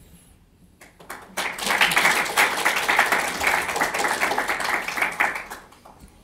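Audience applauding: a few scattered claps about a second in, swelling quickly into dense, steady applause that fades away near the end.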